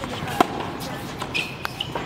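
A single sharp knock of a tennis ball impact about half a second in, over faint background voices.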